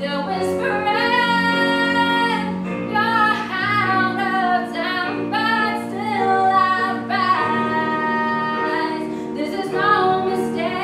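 A girl singing a song solo into a microphone over instrumental accompaniment, holding several long notes.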